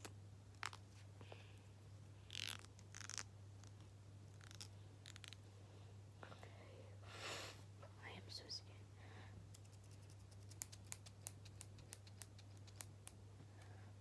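Faint scissor snips and a comb handled close to the microphone: a few scattered clicks and brushing strokes, then a quick run of small snips near the end, over a low steady hum.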